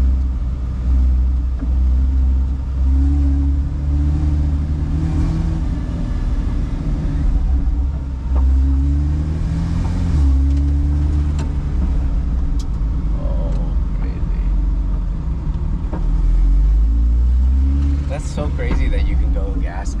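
Porsche Cayman race car's engine heard from inside the cabin, with a deep rumble throughout; its pitch rises and falls several times as the throttle is applied and eased off.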